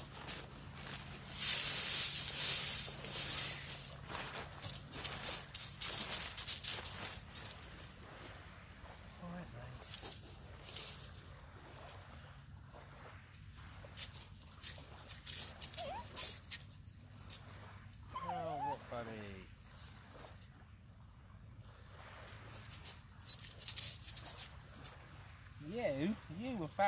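A dog whining briefly, twice, about two-thirds of the way in, among scattered rustling and clicking, with a low steady hum underneath that fades out near the end.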